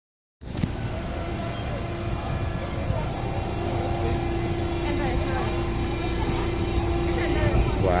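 Propane forklift engine running steadily close by, with a steady whine joining in a few seconds in; people talking in the background.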